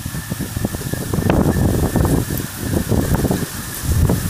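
Storm wind buffeting the microphone in irregular gusts at an open truck window, over the steady noise of heavy rain.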